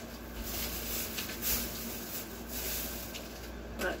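Plastic grocery bag rustling and crinkling in several irregular bursts as it is handled.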